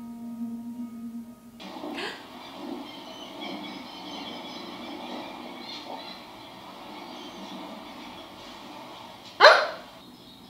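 Film soundtrack: a held low musical tone cuts off about one and a half seconds in and gives way to steady outdoor ambience. Near the end comes one loud, short sound that falls sharply in pitch.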